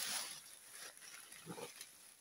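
Lace-up Hunter boots stepping through dry fallen leaves: a rustling crunch at the start, then another, shorter step about a second and a half in.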